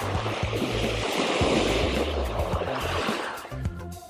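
Background music with a bass line and beat, over the rushing wash of small surf waves breaking on a sandy beach, swelling in the first second or two and fading out near the end.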